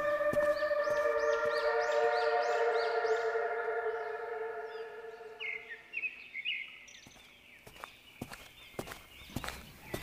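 Eerie sound-design ambience: a sustained drone chord of several held tones that fades away over about six seconds, with a run of high, repeated chirping calls over it in the first few seconds and a few more a little later, then quieter background with faint clicks.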